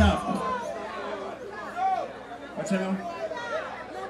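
Indistinct chatter of several voices talking over one another, with a short low boom at the very start as the music stops.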